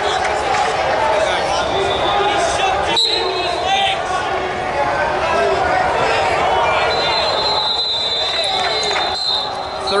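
Many coaches and spectators talking and calling out over each other, echoing in a large hall, with a thud about three seconds in.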